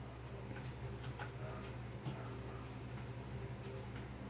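Quiet room tone with a steady low hum and faint, irregular soft ticks from a fingertip swiping and tapping on a smartphone's touchscreen and case.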